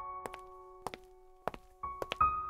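A keyboard chord from the backing music rings on and slowly fades. Several short thunks cut through it: two together a quarter second in, one just before a second, a pair at about one and a half seconds, and another at the end.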